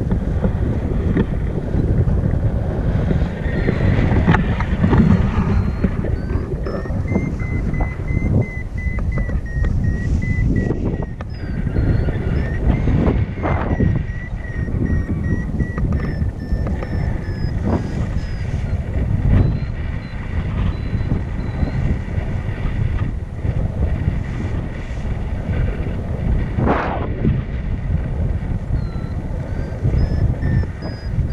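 Airflow buffeting a camera's microphone in flight under a tandem paraglider: a steady low rumble of wind noise that swells and eases in gusts.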